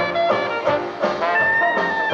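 Traditional New Orleans-style jazz band playing live: trumpet and trombone with clarinet, banjo, string bass and drums, on a steady beat. A high note is held briefly near the end.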